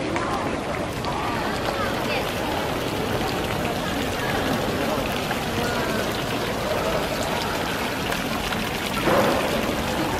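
Fountain water splashing steadily into its basin, under the chatter of people in a busy square.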